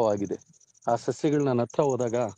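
A man talking in a low voice, with insects trilling behind him in a high, steady, evenly pulsing note that carries on through the pauses in his speech.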